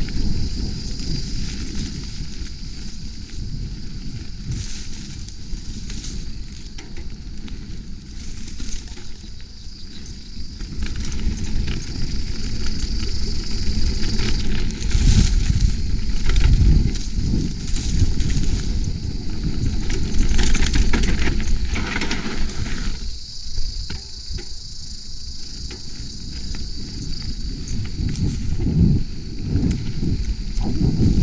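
Mountain bike rolling fast down a dirt singletrack: a rough, uneven rumble of tyres and frame over the bumpy ground, with wind buffeting the body-mounted camera, louder in surges around the middle and near the end. A steady high hiss runs under it for much of the time.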